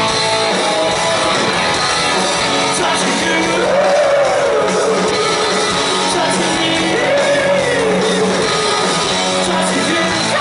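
Live rock band playing loud, with distorted electric guitars, drums and a sung vocal line that rises and falls, heard from within the crowd in a reverberant hall.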